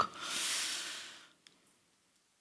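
A woman's breath close to a headset microphone: a hissy rush of air lasting about a second that fades out.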